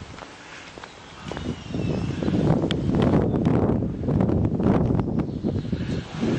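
Wind buffeting the camera's built-in microphone. A loud, irregular, low rumble sets in about a second in and runs on, with a few faint clicks.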